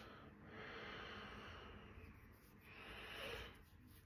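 Soft breathing through the nose close to the microphone: one long breath, then a shorter one near the end.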